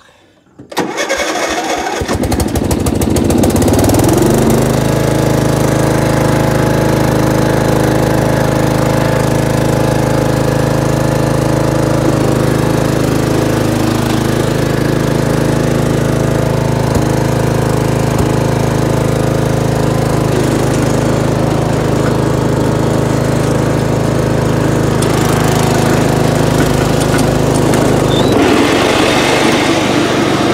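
A Simplicity SunRunner riding mower's Briggs & Stratton engine, choked, is cranked with the key-switch electric starter and catches within about a second. It rises to a steady run of several seconds and holds there, and its note changes near the end.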